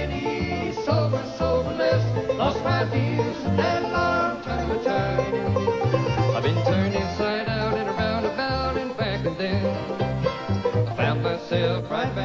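Acoustic bluegrass band playing, with banjo, guitar and dobro over a steady upright bass line.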